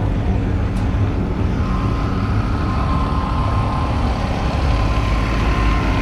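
Small Toyama portable generator running steadily: a constant low engine rumble with a steady whine that comes up about a second and a half in.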